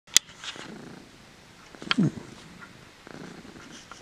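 Domestic cat purring close to the microphone, a low steady rumble. A sharp click at the very start and a short falling sound about two seconds in.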